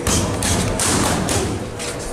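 Boxing gloves hitting focus mitts in quick combinations, about five sharp smacks in two seconds.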